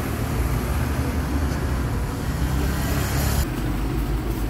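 Street traffic with motorbikes and cars passing: a steady low engine rumble and tyre noise. The sound shifts abruptly a little after three seconds in.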